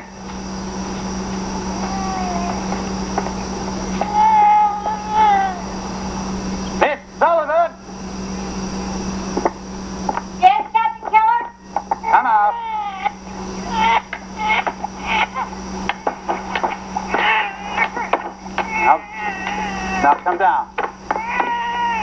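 Several high-pitched voices calling out and chattering, a few at first and many overlapping from about halfway through, over a steady low hum.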